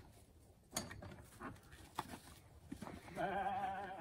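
A few knocks and clicks as a wooden shed door is worked open. Near the end comes a bleat: one long, wavering call lasting about a second.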